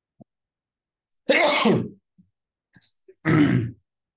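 A man coughing twice, about two seconds apart, each cough about half a second long.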